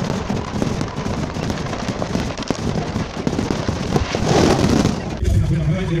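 Aerial fireworks going off: a dense run of crackling pops and bangs that swells about four seconds in, then cuts off about five seconds in.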